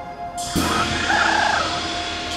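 Film soundtrack music with a held note; about half a second in, a loud wash of hiss sweeps in and slowly fades as the film cuts to a new scene.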